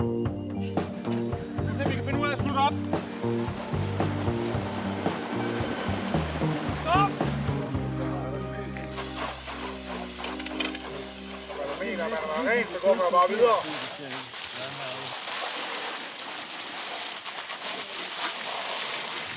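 Background music for the first half, then from about nine seconds in a high-pressure water hose spraying with a steady, growing hiss, with some voices over it.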